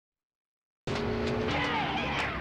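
Silent for nearly a second, then a motorsports TV show opening starts abruptly: race-car engine and tyre-squeal sound effects, with steady held notes underneath and sweeping glides in pitch.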